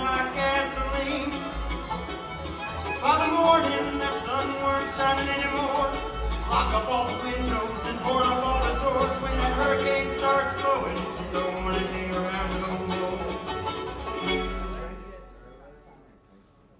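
Bluegrass band playing live on acoustic instruments (banjo, mandolin, acoustic guitar, upright bass and fiddle), with a busy run of plucked notes. About fourteen and a half seconds in the playing stops and the last notes die away.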